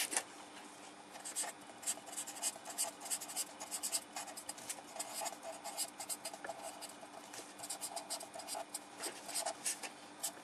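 Felt-tip marker writing on paper: quick, scratchy strokes in irregular runs, starting about a second in, after a single tap at the very start.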